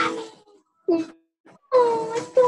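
A person's voice making short wordless vocal sounds: one at the start, a brief falling 'ah' about a second in, then a drawn-out higher-pitched voice beginning near the end.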